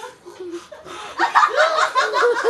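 People laughing: subdued for the first second, then breaking into loud laughter about a second in.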